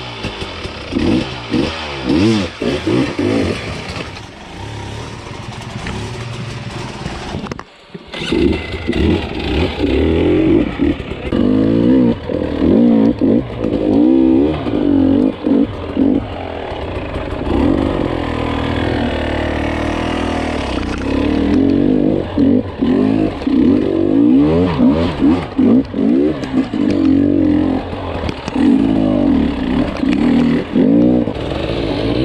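Dirt bike engine revving up and down in short bursts as the bike is ridden slowly over rocks. The sound cuts out briefly just before eight seconds in.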